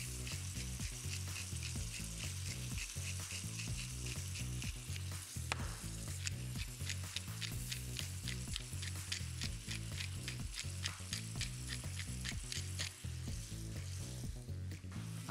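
Sausage, peppers and grated tomato sizzling in a stockpot on a gas hob. A pepper mill grinds over the pot in quick, evenly spaced crunchy clicks through the second half.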